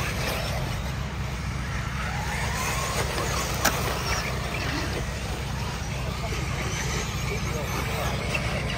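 Electric RC off-road buggies racing on a dirt track: faint rising and falling motor whines over a steady low rumble, with one sharp click about three and a half seconds in. Voices chatter in the background.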